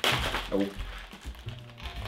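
Plastic packaging of cake decorations being torn open, a sharp crack at the start followed by crinkling, over background music.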